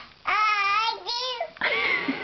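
A toddler's high-pitched voice: one drawn-out vocal sound with wavering pitch, a shorter second one, then a sharper, breathier third sound near the end.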